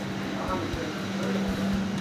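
Steady hum of an airliner cabin at the boarding door, with faint voices and a few soft knocks.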